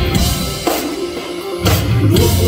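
Live punk rock band playing loud; a little past halfway the bass and low guitar drop out, leaving mainly the drums, then the full band comes back in on a hard hit near the end.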